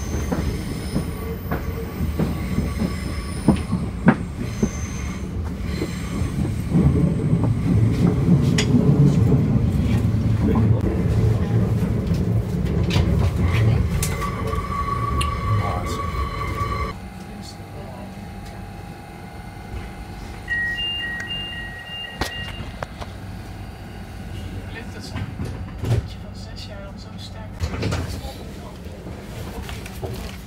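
Rumble of a Sprinter commuter train running on the rails, heard from inside the carriage. It grows louder towards the middle and then drops suddenly to a quieter, steady hum about 17 seconds in, with a brief high tone a few seconds later.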